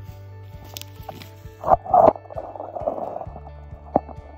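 Background music with a steady bed of held tones, broken a little under two seconds in by a woman coughing twice, loud and close. A sharp click comes near the end.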